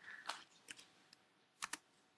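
A handful of faint, irregular clicks, like keys being typed on a computer keyboard while a Bible verse is looked up.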